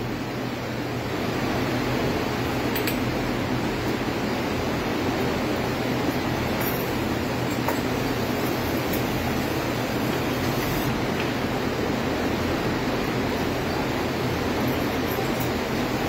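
Steady hum and hiss of milking-parlour machinery running, with a low hum underneath.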